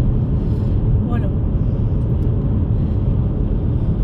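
Steady low rumble of a car on the move, heard from inside the cabin, with a single short spoken word about a second in.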